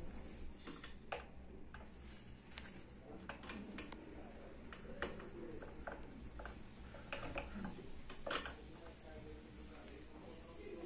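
Allen key unscrewing a small steel set screw from the underside of a chrome lever-handle rose, giving faint, scattered metallic clicks and ticks.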